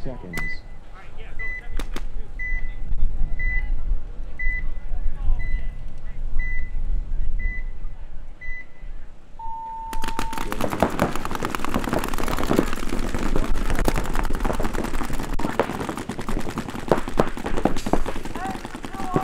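A countdown timer giving short high beeps about once a second, nine in all, then a longer, lower tone as the start signal about nine and a half seconds in. Right after it, many paintball markers open fire in rapid, overlapping streams of shots that carry on to the end.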